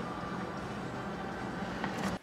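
Steady low rumble and hiss of background noise inside a car cabin, with a faint click near the end.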